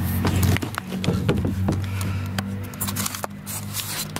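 A person sliding down a plastic playground slide: rubbing and scraping of body and clothes against the slide, with a run of knocks and clicks and some short squeaks in the first couple of seconds.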